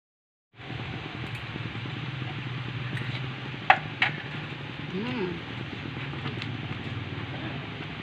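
Steady hiss and low hum of a gas stove burner heating a simmering pot of soup, cutting in suddenly about half a second in. Two sharp clicks come just before the middle, and a short hum from a voice a little after.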